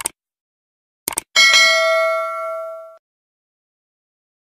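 Subscribe-button sound effect: a short click, then a quick double click about a second in, followed by a bell-like notification ding with several steady tones that rings out and fades over about a second and a half.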